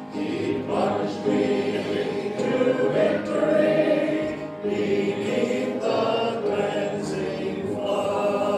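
Congregation singing a gospel chorus together in sustained, phrased lines, with instrumental accompaniment.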